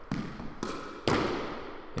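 A squash ball struck by the racket and hitting the court walls during solo backhand drives: a few sharp impacts, about half a second apart, each with a ringing echo off the court walls.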